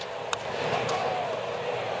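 Crack of a baseball bat meeting the pitch about a third of a second in, on a home-run swing, then a stadium crowd's noise building as the ball carries.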